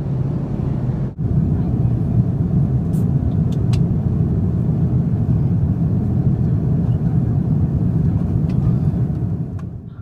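Steady low roar of an Airbus A330's cabin in cruise flight: engine and airflow noise, with a brief dip about a second in.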